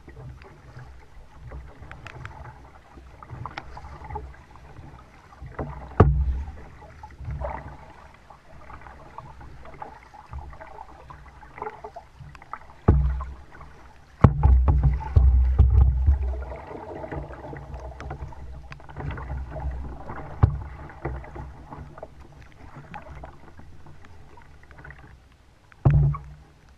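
Kayak being paddled: the double-bladed paddle dipping and splashing in the water in an uneven rhythm, with a few sharp knocks and several loud low thumps, the biggest about six, thirteen and fourteen seconds in and again at the very end.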